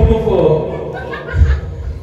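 Speech mixed with chuckling and laughter.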